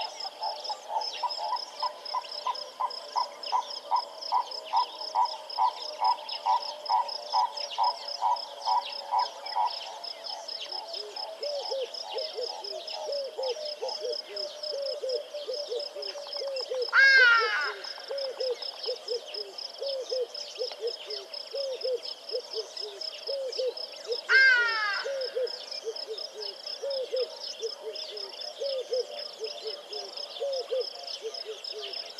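Pulsed animal calls: an even series of about two calls a second for the first ten seconds, then a lower series of short, falling calls. Twice, about 17 and 24 seconds in, a loud call sweeps sharply downward. A steady high chirring runs underneath.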